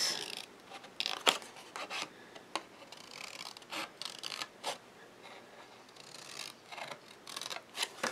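Small craft scissors snipping slits into the edge of a scored sheet of designer series paper: a scattering of short, separate snips at irregular intervals.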